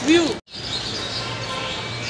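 A man's voice says one word, then the sound cuts out abruptly for a moment and gives way to steady outdoor background noise with a low hum and faint high chirps.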